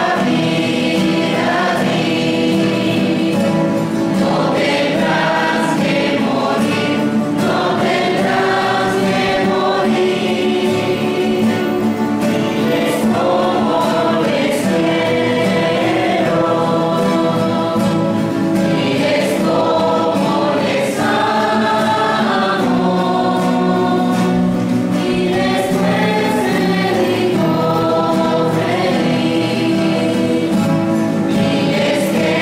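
A group of voices singing a hymn together, continuous throughout.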